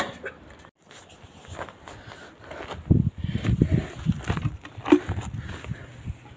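Irregular knocks, scuffs and rustles of hands working a PVC downpipe and its cut-off pieces, busiest in the second half, with one sharper click about five seconds in.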